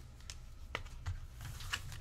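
Vintage baseball cards handled by hand: a few soft, separate clicks and a brief light rustle near the end.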